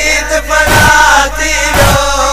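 A Sindhi noha: voices chanting a mourning lament, carried by a heavy beat that strikes about once a second.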